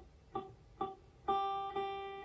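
Electric guitar's high E string plucked at the third fret while the pinky presses down gradually harder. The first two plucks come out short and dead. About a second in, the note G sounds and rings on clearly, a sign the string is now pressed just firmly enough against the fret.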